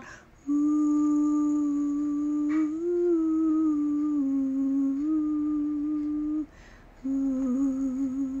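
A woman humming with closed lips: one long, nearly level note lasting about six seconds, a short break, then a second hummed note starting about seven seconds in.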